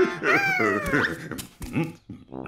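Cartoon dog character whining and yipping: a high whine that slides down in pitch, then a few short yips.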